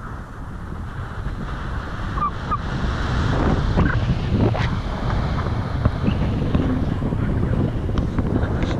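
Wind buffeting the camera microphone in paraglider flight, a steady rushing rumble that grows louder about three seconds in.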